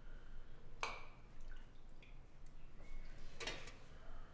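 Kitchenware being handled at a stove: small clinks and knocks of metal or crockery, the loudest about a second in and again around three and a half seconds, with a brief ring after the first.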